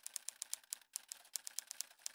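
Typing sound effect: rapid, uneven key clicks, several a second, that stop abruptly near the end.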